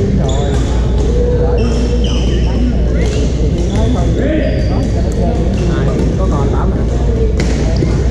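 Badminton hall: overlapping players' voices, short high squeaks of shoes on the wooden court floor, and occasional sharp clicks of rackets hitting shuttlecocks, over a steady low hum, all echoing in a large hall.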